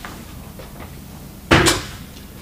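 A single short, sharp knock about one and a half seconds in, against quiet room tone.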